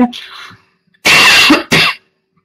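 A woman coughs about a second in: one long cough that breaks into a short second one.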